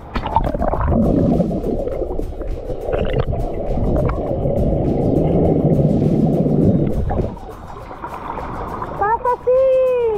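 Muffled rush and gurgle of pool water heard through a camera held underwater in a swimming pool, dull with the highs cut off, for about seven seconds; the camera then surfaces and a voice comes in near the end.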